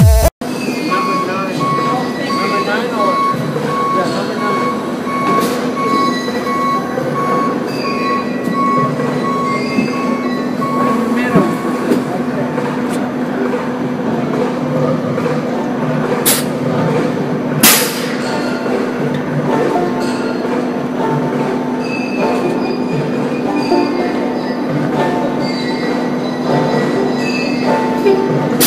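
Electric streetcar running on street rails: a steady hum with a thin whine that comes and goes over the first ten seconds or so, and two sharp clicks a little past halfway.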